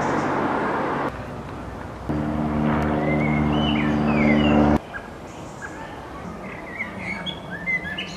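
Small propeller plane's engine running with a steady hum, starting about two seconds in and cutting off abruptly a little past the middle. Birds chirp throughout, and a brief rush of noise comes at the very start.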